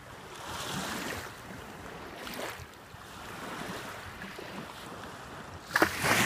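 Shallow lake water lapping and sloshing in soft swells about every second and a half, with a sharper, louder splash near the end.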